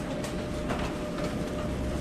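Steady background room noise: a low rumble and hiss with a faint steady hum-like tone and a few light clicks.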